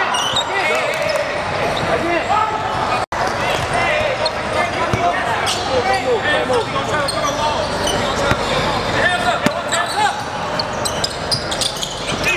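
Live game sound in a gym: many spectators and players talking at once, with a basketball bouncing on the court. The sound cuts out for an instant about three seconds in.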